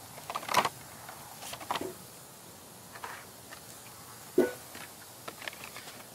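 Hot Wheels blister-carded cars and the cardboard case being handled: scattered short plastic-and-card clicks and rustles, with one sharper knock about four seconds in.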